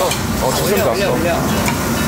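Raw pork slices sizzling as they are laid onto a hot tabletop barbecue grill, a steady hiss, with people talking and laughing around the table.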